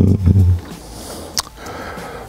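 A man's low, drawn-out hum of hesitation, lasting about half a second, then a short click about a second and a half in.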